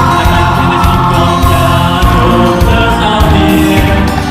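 A man singing a pop song into a handheld microphone over a backing track, amplified through a banquet hall's sound system, with fuller choir-like vocals in the accompaniment.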